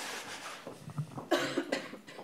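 A person coughing in the room. The loudest cough comes a little over a second in and is short.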